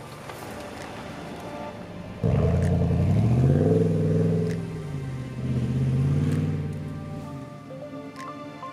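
Ram 1500 Rebel pickup truck driving past and pulling away, its engine note starting suddenly about two seconds in, rising in pitch, easing off and then picking up again before fading. Background music plays underneath.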